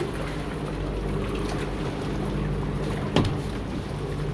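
Steady low motor hum, with a single sharp knock about three seconds in.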